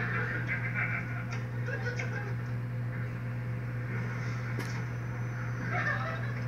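Sitcom soundtrack from a wall-mounted TV heard across a small room, during a pause in the dialogue, over a steady low hum.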